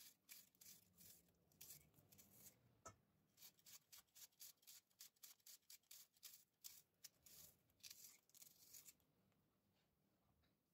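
Faint, quick cuts of a serrated knife slicing through an onion held in the hand, a few strokes a second, stopping about a second before the end.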